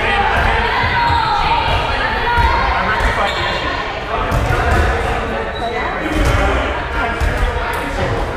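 Rubber dodgeballs bouncing and thudding on a wooden gym floor at irregular intervals, over the overlapping chatter of players in the gymnasium.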